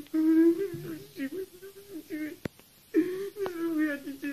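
A boy wailing aloud in long, drawn-out, wavering cries, with a short break before the second cry. A single sharp click comes in the break.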